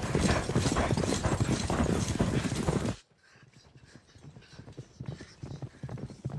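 Horse galloping, with fast, dense hoofbeats on soft ground, loud and close at first. About three seconds in the sound drops suddenly to much fainter, distant hoofbeats.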